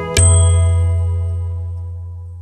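Closing chord of a guitar instrumental, struck just after the start over a deep bass note, then ringing out and fading away steadily as the piece ends.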